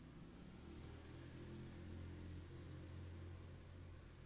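Near silence: room tone with a faint low hum that swells slightly in the middle.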